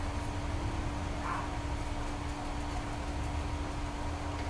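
Steady low rumble of room noise with a constant electrical hum.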